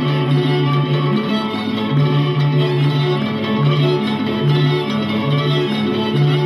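Slovak folk string music built up from overdubbed parts all played on a single violin, with a low line of long held notes under busier upper parts.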